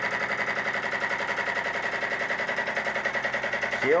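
Homemade soda-can Stirling (hot-air) engine running with no flame under it, its crank and flywheel clattering at a fast, even rate of about a dozen clicks a second. It is losing speed as the hot air inside cools.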